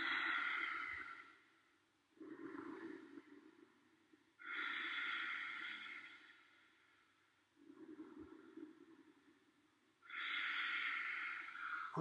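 A man's slow, deep breathing while he holds a seated forward bend: about three full breaths, each a louder, hissing breath followed by a quieter, lower one.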